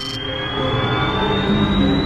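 Science-fiction teleport sound effect: a thin whine that rises slowly in pitch over a low rumble that grows louder, mixed with dramatic film score.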